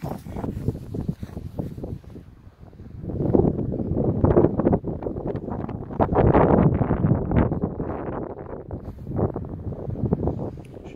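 Wind buffeting the phone's microphone in gusts, swelling about three seconds in and again around six seconds.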